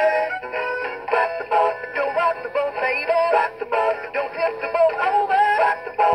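Singing rainbow trout wall plaque, a battery novelty toy, playing its song: a processed-sounding voice singing over a backing track. The song cuts off right at the end.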